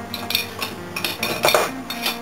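Metal hand tools knocking and clinking together as they are picked up and handled on a workbench: several short, irregular knocks.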